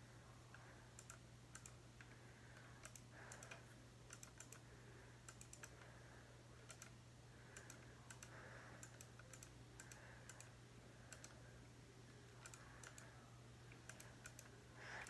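Near silence with faint, irregular clicks from computer input, a few every second or so, over a low steady hum.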